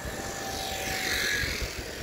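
Wind rumbling on a phone microphone while riding a bicycle along a road, with a steady hiss of street traffic. The hiss swells and fades around the middle.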